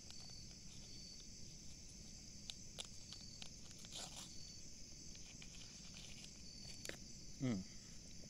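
Steady high-pitched chorus of insects, with a fainter chirp switching on and off every second or two, over a low steady rumble and small clicks of a packet being handled.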